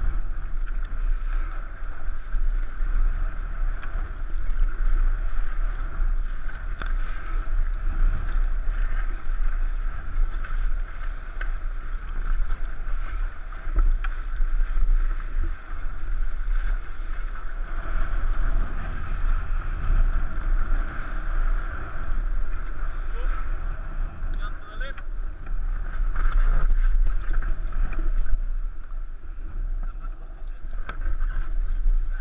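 Wind rumbling on an action camera's microphone over the steady rush of river water around an inflatable raft.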